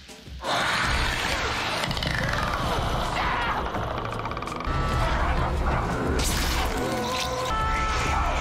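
Horror film soundtrack: loud, sustained dramatic score mixed with the sound effects of a violent struggle.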